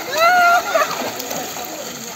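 Water splashing in a swimming pool as swimmers jump in and move about, with one loud, high-pitched shout about a quarter of a second in.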